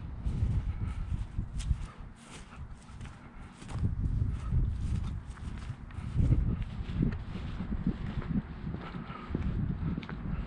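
Footsteps of a person walking across mown grass and onto asphalt, a string of short steps over a low rumble.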